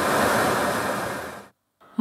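Rushing jet noise from fighter aircraft in flight, swelling and then fading away over about a second and a half.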